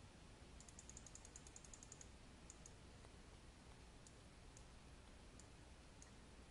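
Near silence with faint computer-mouse clicking: a quick run of small ticks at about ten a second, then a few single clicks.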